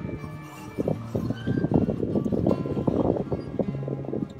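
Acoustic blues guitar music, with a busy run of picked and strummed notes that thickens about a second in.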